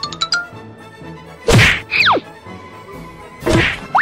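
Cartoon-style comedy sound effects. A rising whistle with quick ticks ends just after the start. A loud whack comes about a second and a half in, with a fast falling whistle right after it. A second loud whack comes near the end.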